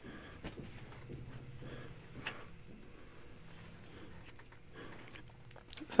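Faint rustling and a few light ticks from a cotton T-shirt being handled and laid down on a pile of clothes, over a low steady hum.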